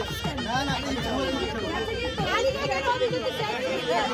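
Several people chatting and talking over one another, with music playing in the background.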